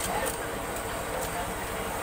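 Indistinct background voices and general market noise, steady throughout, with three short sharp clicks in the first second and a half.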